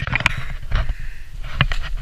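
Wind rumbling on a handheld action camera's microphone, with a few short, hard breaths and rustles from a skier out of breath near the top of a steep climb on foot in the snow.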